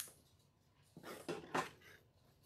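A sharp scissors snip through ribbon, then, about a second in, wired ribbon crinkling and rustling as the bow is handled, with two louder crackles.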